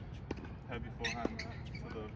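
Tennis ball being hit and bouncing on a hard court: a couple of sharp knocks about a second apart.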